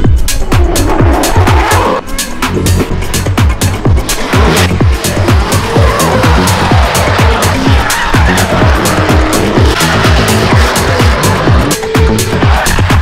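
Electronic dance music with a steady beat, laid over drift cars sliding in tandem: engines revving and tyres squealing.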